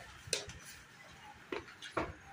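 A few sharp clicks and taps: one about a third of a second in and a quick cluster near the end, over faint background noise.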